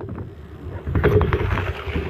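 Inline skate wheels rolling over rough ground: a steady, gritty rumble with a few sharp clacks.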